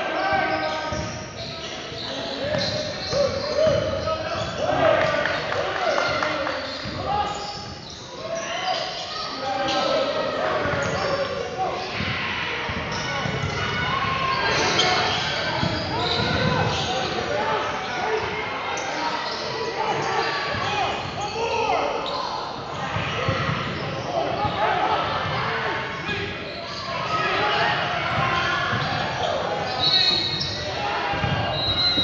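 Basketball dribbled and bouncing on a hardwood gym floor during game play, with players and coaches shouting. The sound echoes in a large gym.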